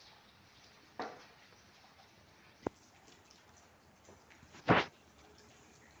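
Light rain, faint and steady, with a few separate drips or taps: a soft one about a second in, a sharp click partway through, and a louder short one near the end.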